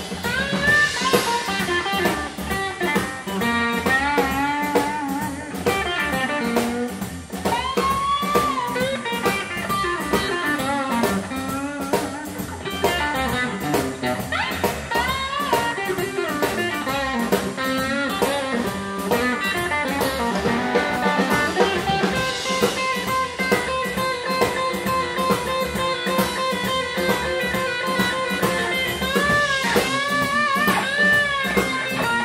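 Live blues band: a Stratocaster-style electric guitar plays lead lines full of string bends over electric bass and drum kit. From about two-thirds of the way in, the guitar settles into repeated held notes.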